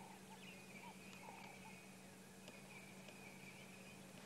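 Near silence: faint outdoor ambience with a steady low hum and a steady faint high tone, and a few faint short chirps in the first second and a half.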